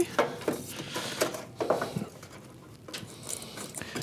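Handling noises from a diesel space heater's plastic controller housing and its wiring being worked back into place: a scatter of small clicks, taps and rustles.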